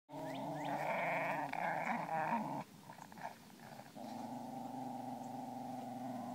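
Wire-haired fox terriers growling in play-fighting: a loud, continuous growl for about two and a half seconds, a short break, then a steady growl again from about four seconds in.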